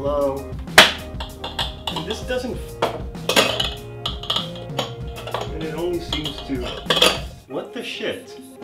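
Hard plastic parts of a food processor clacking and clicking as the bowl, lid and pusher are handled and fitted together, with repeated sharp knocks throughout.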